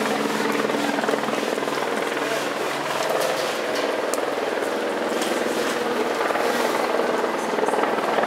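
Helicopter flying nearby, a steady drone under a wash of outdoor noise, with scattered sharp ticks throughout.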